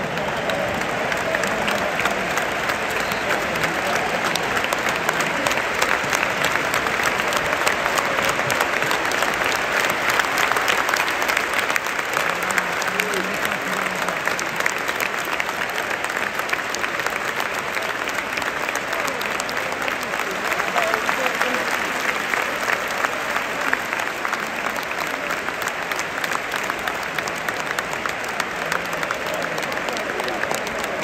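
Football stadium crowd applauding, thousands of hands clapping together with voices mixed in.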